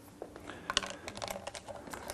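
A quick run of light clicks and taps, like keyboard typing, sparse at first and then thick from about half a second in.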